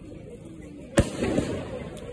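Sky shot aerial fireworks bursting overhead: one sharp bang about halfway through, followed by a rapid crackle of smaller reports.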